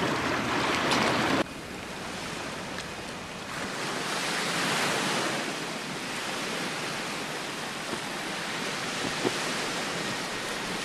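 Sea surf washing against a rocky shore, with wind. The sound drops abruptly about a second and a half in, then swells gently a few seconds later.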